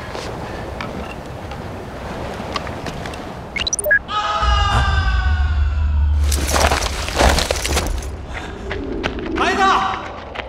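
A deep rumble starts about halfway through, under a man's long, slowly falling cry. A loud crash follows, and short shouts come near the end.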